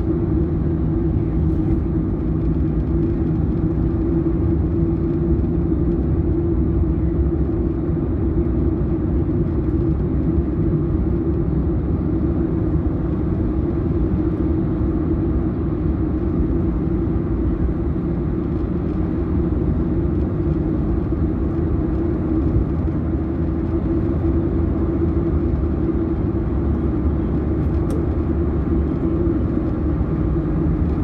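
Steady engine and tyre-on-road rumble heard from inside a car cruising on a motorway, unchanging throughout.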